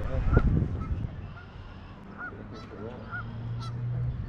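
Geese honking in short calls several times across the water, with small birds chirping high above. A brief low rumble, like wind on the microphone, comes about half a second in.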